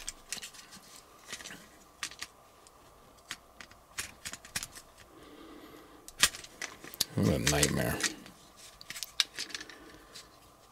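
Hard plastic Transformers figure parts clicking and clattering as two Constructicon robots are handled and pressed together to connect them into Devastator. About six seconds in comes one sharper click, and a little after halfway a man's voice briefly sounds without clear words.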